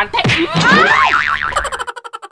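A cartoon 'boing' comedy sound effect: a wobbling, bouncing tone that breaks into rapid pulses, about ten a second, which fade away near the end.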